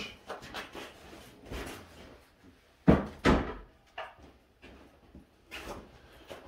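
A two-stroke expansion chamber (tuned exhaust pipe) being put down on a workbench: two solid knocks about half a second apart midway, with smaller clicks and rustling around them.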